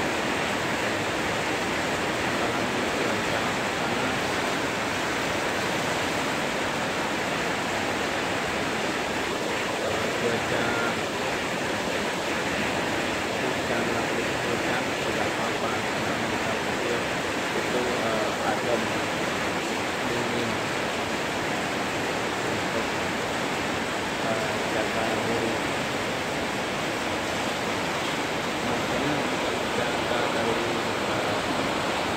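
Heavy rain falling hard on corrugated metal roofs, a dense, even hiss that holds steady throughout.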